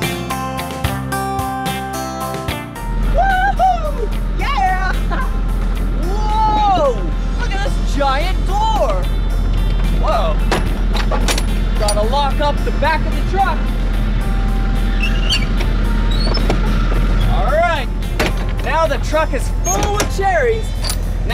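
Acoustic guitar background music for about the first three seconds, then a steady low rumble with a man's wordless voice sliding up and down in pitch, and a few sharp clicks.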